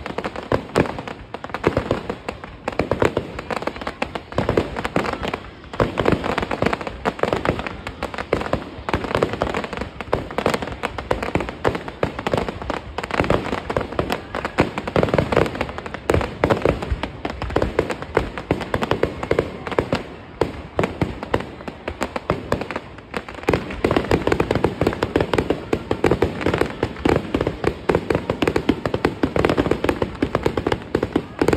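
Aerial fireworks display: a continuous barrage of shells bursting and crackling, many bangs a second with no pause, growing denser in the last few seconds.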